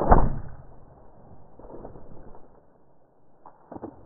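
A bow being shot: a sudden, loud thump of the string's release at the very start that dies away within about half a second, followed by faint rustling and two quieter knocks near the end.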